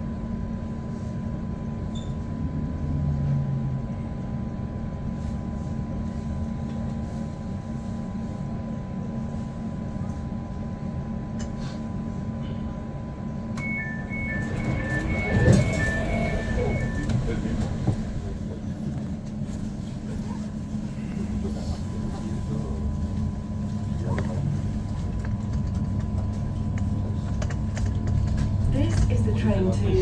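Elizabeth line Class 345 train standing at a platform with a steady electrical hum, then a run of door-closing warning beeps lasting about three seconds, with a knock as the doors shut. Over the last several seconds the train pulls away, its low rumble rising.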